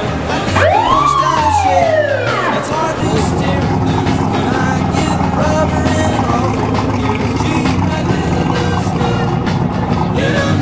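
One siren-like whoop that rises and then falls over about two seconds, starting about half a second in. It sits over background music and a steady low rumble of slow-moving cars and street noise.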